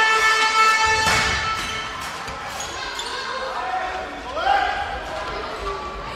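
Indoor handball play in a sports hall: a sustained horn-like tone ends about a second in, then the ball thuds on the floor amid short shouts from the players.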